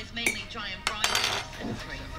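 A metal teaspoon stirring coffee in a ceramic mug, clinking against the inside of the cup several times with short ringing tones.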